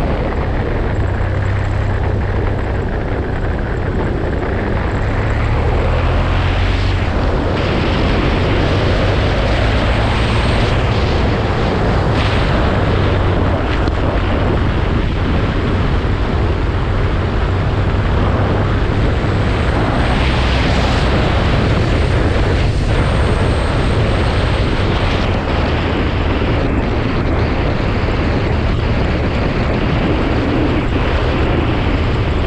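Adventure motorcycle riding along a gravel road at a steady pace: a constant low engine drone under the noise of wind and tyres on gravel.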